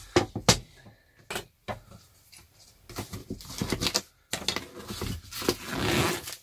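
A series of clicks and taps from a plastic-wrapped wooden picture frame being turned over and handled on a table, followed by rustling of the plastic shrink-wrap near the end.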